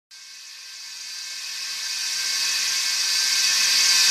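Rising whoosh sound effect of an animated intro: a high hiss with a few faint steady tones in it, growing steadily louder.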